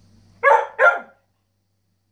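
Rough collie giving two quick barks in a row, about half a second apart, to intimidate a cat.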